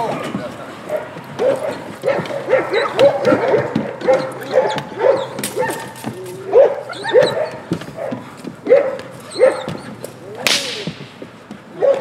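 Young dog biting and tugging on a bite pillow, giving a run of short, high whining yelps in quick succession. Sharp cracks and slaps are heard among them, the loudest about ten and a half seconds in.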